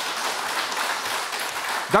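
A small audience applauding, steady clapping from a handful of people.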